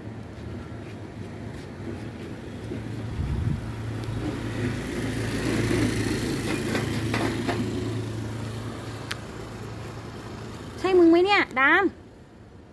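A motor vehicle passing by: a low engine hum and road noise that swell to a peak about halfway through and then fade. Near the end, two loud, short vocal sounds with a wavering pitch.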